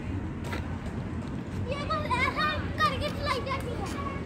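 Children's high voices calling and chattering for about two seconds midway, over a steady low background rumble.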